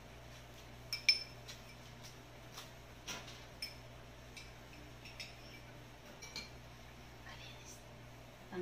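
Light clinks and taps of a metal spoon and drinking glasses against a pitcher and the tabletop, the sharpest clink about a second in, then single clicks every second or so.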